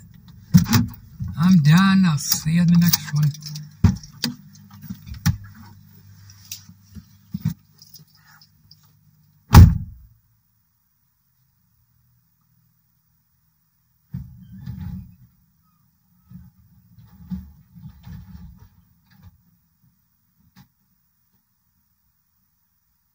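Car door shutting with one loud thump about ten seconds in, after muffled talk and a few sharp clicks over a low hum. Afterwards there are only a few faint rustles.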